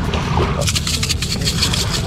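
Spiced salt rattling in a glass shaker shaken hard over a fish, a quick run of crisp shakes starting about half a second in, with a steady low rumble underneath.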